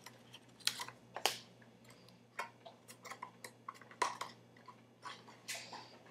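Irregular small clicks and taps of miniature plastic toy pieces and their packaging being handled, a few sharper knocks among them.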